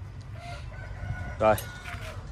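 A faint, drawn-out bird call in the background over a low steady rumble.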